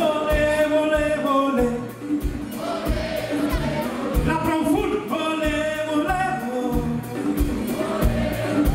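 Live band music: a man sings lead into a microphone over a steady drum beat.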